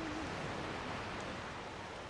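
Ocean surf washing onto a beach: a steady, even rush of breaking waves.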